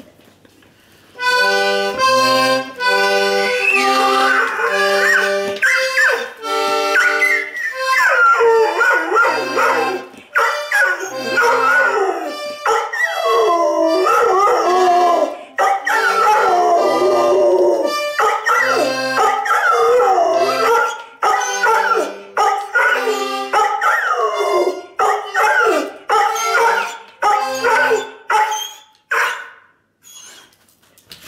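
A small button accordion playing a simple tune of alternating bass notes and chords, starting about a second in. From about seven seconds in a pit bull howls along over it, its long howls sliding up and down in pitch, until just before the end.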